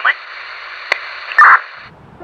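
Two-way radio static: a thin, hissing crackle with a sharp click about a second in and a loud garbled burst about a second and a half in, cutting off just before the end.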